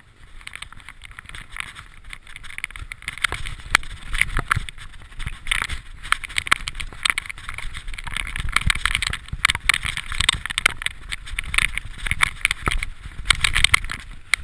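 Mountain bike riding downhill on a dirt trail covered in dry leaves: tyres crunching over dirt, leaves and rocks, with a steady run of sharp knocks and rattles from the bike over the rough ground. It grows louder over the first few seconds as the pace picks up.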